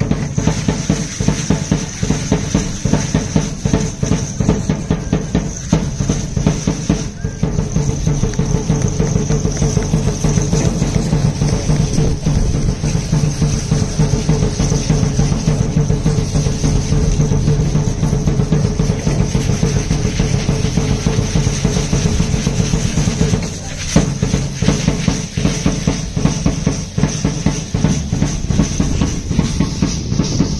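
Fast, steady drumming accompanying a traditional danza de indios, with a brief break a little past three-quarters of the way through.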